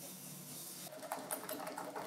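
Wire balloon whisk beating egg yolks and sugar in a glass bowl: faint, quick, repeated ticks of the wires against the glass, starting about a second in.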